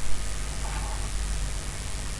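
Repaired Sony WM-F31 Walkman playing through a small test speaker: a steady hiss with a low hum and no music.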